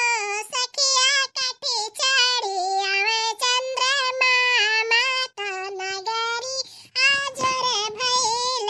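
A cartoon character's high-pitched voice singing a song in phrases, with brief breaks between lines.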